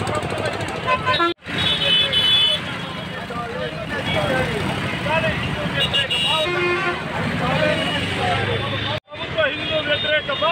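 Street protest sound: protesters' voices shouting slogans over traffic noise, with a vehicle horn sounding about two seconds in and again around six seconds. The sound cuts out abruptly twice, between clips.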